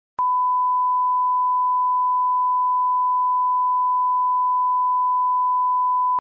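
Steady 1 kHz sine test tone, the line-up reference tone that goes with colour bars at the head of a video tape. It starts just after the beginning and holds one unchanging pitch and level.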